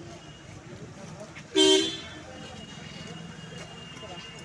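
A single short vehicle horn honk about one and a half seconds in, much louder than everything else, over a low background murmur of voices.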